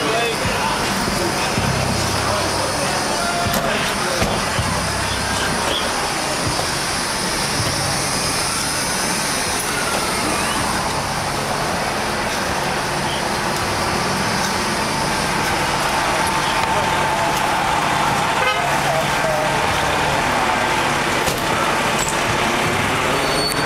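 Loud, steady city street noise: traffic and voices, with car horns sounding now and then.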